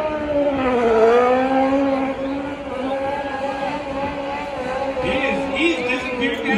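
Race car engine held at high revs through a tyre-smoking burnout. Its pitch dips about a second in, then holds steady.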